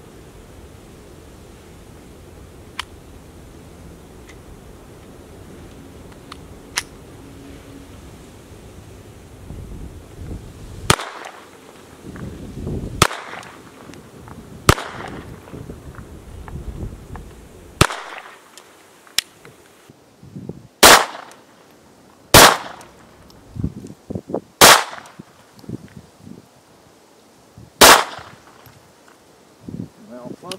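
Ruger Mark I .22 LR semi-automatic pistol firing about eight single shots at an irregular pace, one every two to three seconds, with the later shots the loudest. Wind rumbles on the microphone during the first ten seconds, before the shooting starts.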